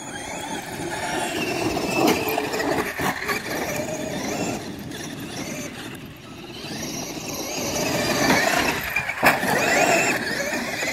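Traxxas X-Maxx radio-controlled monster trucks racing past, their electric motors whining up and down in pitch over the noise of tyres churning dirt. The sound swells as the trucks pass close about two seconds in, dips around the middle and swells again toward the end, with a couple of sharp clicks.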